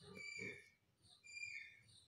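Near silence: faint room tone with two brief, faint, indistinct sounds about a second apart.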